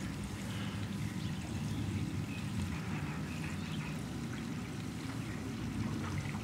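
Steady low rush of running water from a backyard pool and spa.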